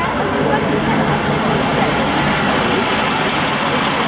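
Ikarus 280 articulated bus's diesel engine running steadily as the bus drives slowly past.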